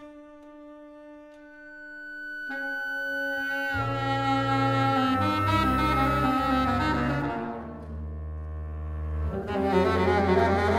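Freely improvised chamber music: a bowed double bass and saxophone holding long sustained tones, with a high held tone from the theremin. It starts quietly, and the bass comes in loud and low about four seconds in, falls away near eight seconds and swells again just before the end.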